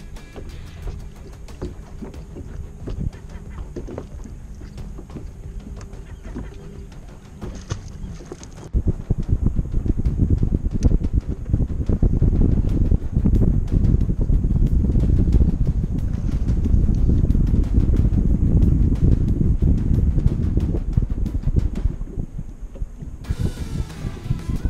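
Faint background music, then about a third of the way in a loud, gusty low rumble of wind buffeting the microphone takes over until near the end.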